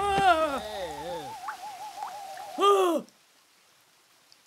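An animated character's wordless cartoon voice: a wobbling, falling moan over a held warbling tone, then a short loud cry about two and a half seconds in. The last second is silent.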